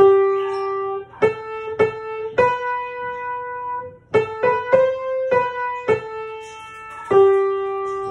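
Piano picking out the melody line of a psalm refrain, a single note at a time with no chords, about a dozen notes. The last note is held from about seven seconds in.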